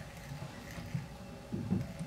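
Quiet room tone with faint handling noises, including a small tick about halfway, as black tying thread is wrapped from a bobbin onto a hook shank held in a fly-tying vise.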